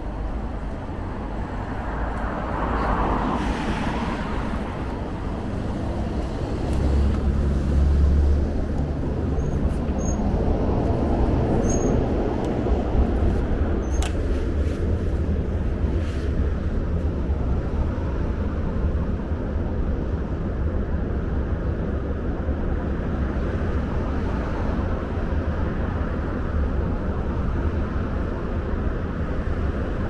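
City road traffic: a steady wash of car noise with a deep low rumble that swells briefly about seven seconds in.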